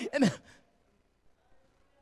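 A man says one word into a handheld microphone, followed by a short breath out, then a pause of near silence lasting over a second.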